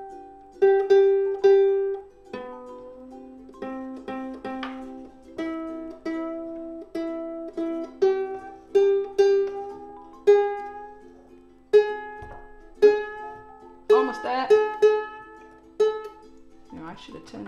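Strings of an Ibanez UK C-10 ukulele plucked one at a time, again and again, while the tuning pegs are turned: new clear nylon strings being brought up to pitch. Some notes slide upward as they ring while a peg is tightened.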